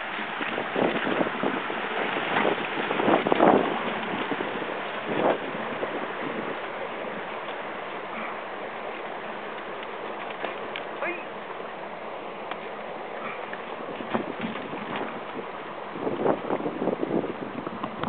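Shallow river water rushing and splashing around the wheels of a pedal-powered recumbent quadracycle as it fords the stream, then the wheels crunching and rattling over loose stones. Loud knocks and jolts come in the first few seconds and again near the end.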